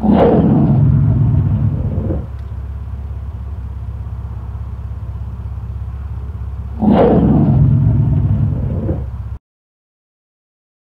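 Two big-cat roar sound effects, each lasting about two seconds, one at the start and one about seven seconds in, over a steady low rumble. All of it stops abruptly near the end.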